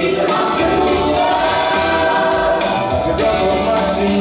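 Gospel choir singing live, holding sustained chords over instrumental backing.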